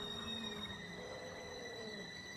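Faint background music of soft, sustained notes that waver slowly in pitch, with a thin steady high tone over it.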